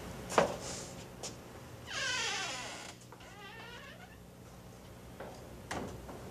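A cat meowing: one long, wavering call that falls in pitch, starting about two seconds in and trailing off over a couple of seconds. A few light knocks come before and after it.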